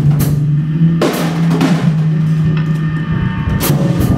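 Electric bass played through electronics, holding a low sustained note, with a drum kit striking cymbals and drums over it: sharp hits at the very start, about a second in and near the end.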